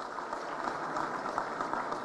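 Applause from a crowd, a steady patter of many hands clapping.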